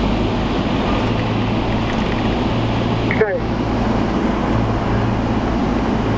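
Steady engine and road noise inside a police vehicle's cabin as it drives slowly, with a constant low hum. A brief voice-like blip about three seconds in.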